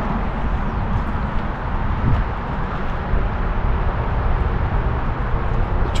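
Steady outdoor background noise, mostly a low rumble with no single clear source.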